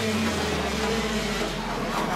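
Racing kart engine running at speed as the kart goes through a corner.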